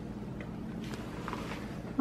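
Steady low room hum, with a man's voice heard only faintly, off-microphone, about a second in.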